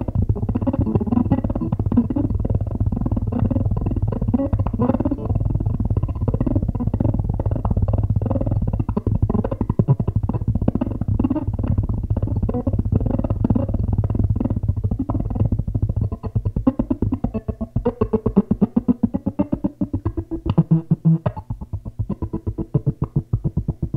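Nine-string electric guitar (the home-built 'Future Lute') played through a 1-watt amp driving an Ampeg 8x10 bass cabinet. Dense picked notes ring over a steady low drone; about 16 seconds in the drone drops out and quick, choppy repeated notes follow.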